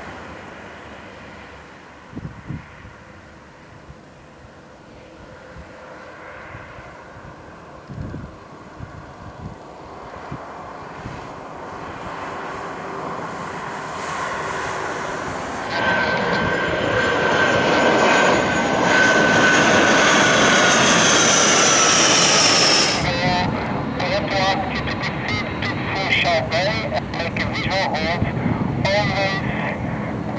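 Dassault Falcon 50's turbofan jet engines at power through a touch-and-go climb-out. The sound grows steadily louder as the jet comes toward and over the listener, with a high turbine whine that falls in pitch as it passes. The loud part cuts off sharply a little over two-thirds of the way in.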